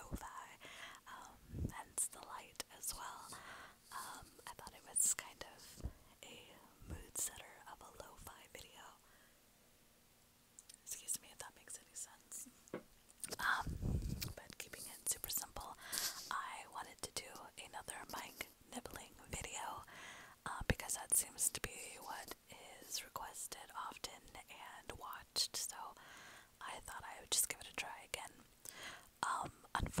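Close mouth sounds right on a small inline cable microphone: lips and teeth nibbling at it, giving many small wet clicks, with breathy whispering. There is a short lull partway through and a louder bump of mouth or teeth on the mic about fourteen seconds in.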